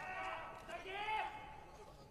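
A man's voice shouting, with a drawn-out call that rises and falls about a second in; the words are not clear.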